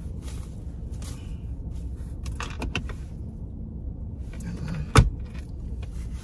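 Steady low rumble inside a parked car, with faint rustling of clothing and one sharp knock about five seconds in.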